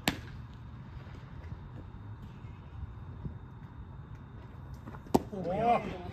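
A sharp smack right at the start and a louder one about five seconds in, the second a pitched baseball popping into the catcher's mitt, followed at once by shouted voices. A low steady rumble runs beneath.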